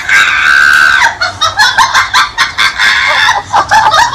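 A loud, shrill wailing cry, held for about a second and then broken into short cries, over a fast regular beat.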